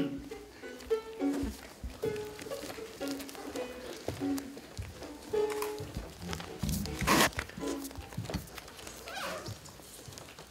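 Live plucked string instrument playing sparse, short, separate notes that thin out about halfway through. About seven seconds in there is one loud, short rushing noise.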